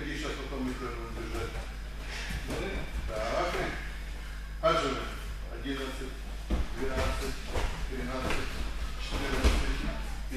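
Indistinct voices talking, with a few sudden thumps, the loudest about five seconds in.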